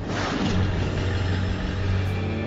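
A car engine sound effect running steadily with a deep low hum.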